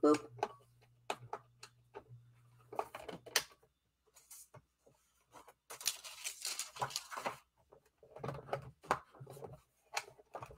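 Sheets of paper and a piece of craft foil being handled and laid down on a tabletop: scattered light taps and rustles, with a longer rustle about six seconds in.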